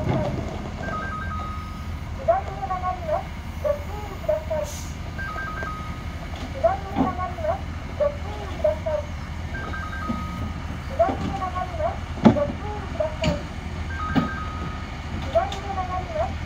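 A short electronic jingle of tones and a voice-like melody, repeating about every four seconds, over the steady low running of a diesel engine.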